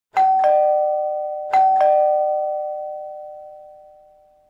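Two-tone doorbell chime sounding ding-dong twice, a higher note followed by a lower one, the second pair coming about a second and a half after the first. Each pair rings out and fades slowly.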